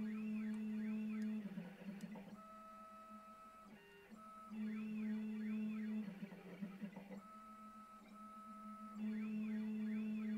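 Stepper motors of a desktop CNC router driving its axes through a dry run of the toolpath, with no end mill cutting: a steady motor whine that holds for a second or so, then warbles up and down as the axes trace curves, the cycle repeating about every four and a half seconds.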